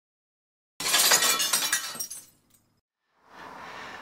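Glass breaking and shattering about a second in, a sudden crash followed by a second or so of tinkling shards that dies away. Faint outdoor background noise fades in near the end.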